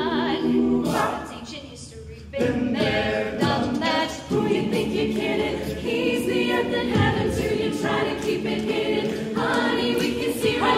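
Mixed-voice a cappella group singing, a female solo voice over the group's backing voices. About a second in the sound thins out briefly, then the full group comes back in.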